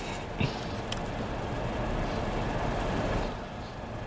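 Steady room noise, a low even hum and hiss, with two faint short clicks about half a second and a second in.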